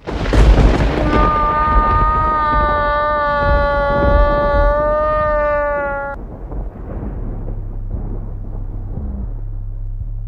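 Dramatic edit sound effects: a loud boom hit, then a single high note held for about five seconds that stops suddenly, followed by a low rumbling drone.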